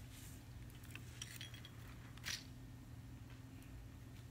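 Faint small clicks of a gel top coat bottle and its brush being handled, one slightly louder click a little past two seconds in, over a low steady hum.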